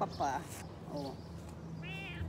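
A pet cat meowing, a couple of short meows.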